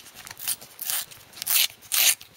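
A sticker pack wrapper being torn open by hand, crinkling and ripping in about four short bursts.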